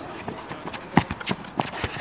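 Running footsteps on artificial turf: a quick, uneven series of thuds from several people sprinting, the loudest about a second in.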